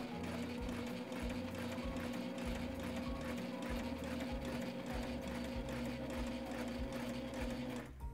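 Sailrite Ultrafeed LSC walking-foot sewing machine running steadily, sewing a line of straight stitches through two layers of thin canvas: an even motor hum with rapid needle strokes, stopping just before the end.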